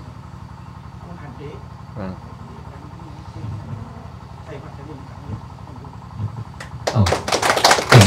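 Quiet, murmured speech, then a group of people breaking into applause about a second before the end; the clapping is much louder than anything before it.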